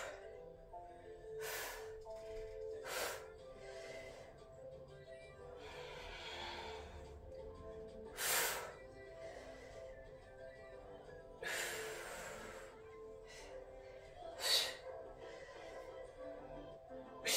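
Background music playing from a television, with short, sharp exercise breaths through the mouth every few seconds as a kettlebell is worked overhead. The loudest breaths come about eight and fourteen seconds in, and a longer breath comes about twelve seconds in.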